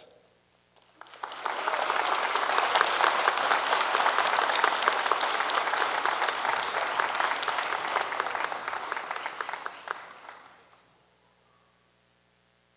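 Audience applause for an award winner. It starts about a second in, holds steady for about nine seconds, then dies away near the end.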